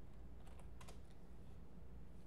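Faint, quick keystrokes on a computer keyboard, about five taps in a cluster roughly half a second to a second in, as a word is typed in.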